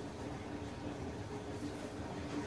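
Faint, steady background hum and wash of noise from a washing machine running elsewhere in the house.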